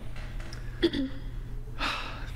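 A person's brief vocal sound about a second in, then a quick audible intake of breath near the end, just before speaking resumes. A steady low hum runs underneath.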